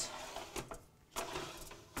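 Metal sheet pan sliding over the wire oven rack as it is pushed into the broiler: faint metal-on-metal scraping with a short clatter, in two pushes.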